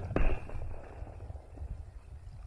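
A plastic sling bullet smacks into a watermelon and bursts it: one sharp hit a moment in, with a short spatter after it, over a low rumble.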